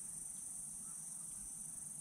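Insects chirring outdoors in a steady, high-pitched chorus.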